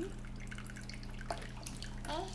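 Thin stream of tap water trickling and dripping from a kitchen faucet into a plastic tub of water, with a couple of light clicks in the second half.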